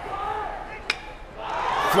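A single sharp crack of a baseball bat hitting the pitch about a second in, followed by crowd noise swelling as the ball flies into the outfield.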